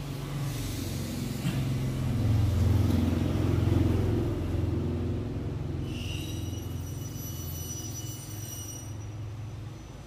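A motor vehicle's engine rumble passes close by, swelling over the first few seconds and then slowly fading. A faint, thin high whine sounds for a few seconds after the middle.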